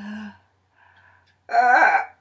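A woman's wordless vocal cries. There is a short cry at the start and a faint one about a second in. The loudest cry comes near the end, with a pitch that wavers and then falls.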